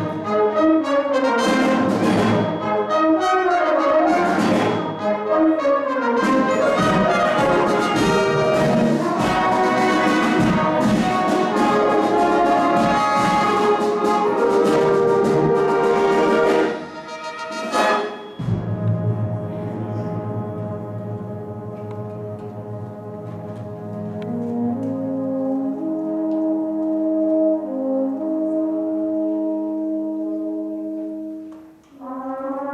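Brass-and-saxophone fanfare band with percussion playing a concert overture: a loud full-band passage, then a sharp accent about seventeen seconds in, after which the band drops to quieter held chords that climb step by step and swell near the end.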